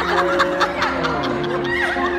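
Women laughing over background music of steady held tones; the laughter comes in breathy bursts, strongest in the first second and again near the end.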